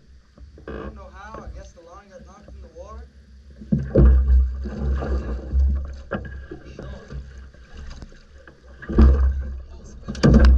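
A hooked alligator thrashing and splashing in the water against the side of a flat-bottom boat. There are heavy splashes and thumps from about four seconds in, and another loud splash near the end as it is hauled up against the hull.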